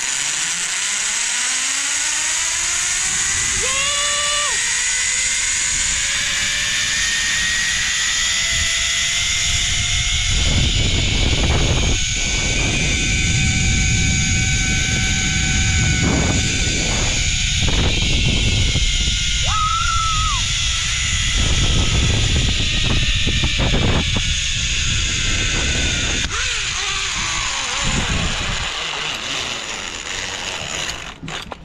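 Zip line trolley pulleys running along the steel cable: a whine that climbs in pitch as the rider gathers speed, holds, then drops away near the end as she slows into the landing. Wind rumbles heavily on the camera microphone through the middle of the ride.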